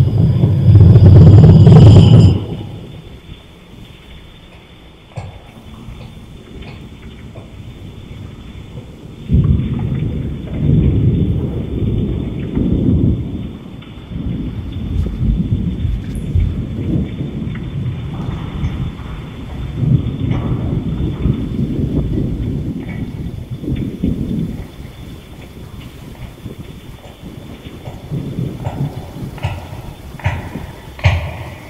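Thunder in a rainstorm: a loud thunderclap at the start lasting about two seconds, then repeated low rolling rumbles that swell and fade from about nine seconds in, over steady rain.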